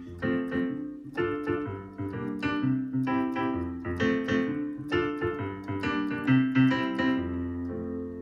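Digital piano playing a 1-6-2-5 chord progression in F major (F, D minor, G minor, C major): held chords with a quick run of melody notes over them, ending on a sustained chord.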